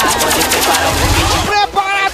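Electronic DJ mix at a track transition: a rapid run of sharp hits over a low bass swell, then a new track cuts in about one and a half seconds in with choppy, stuttering synth notes.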